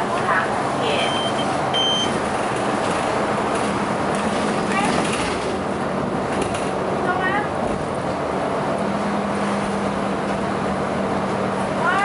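Cabin noise of a SUNWIN city bus on the move: steady engine and road noise heard from inside. A steady low hum comes in about nine seconds in.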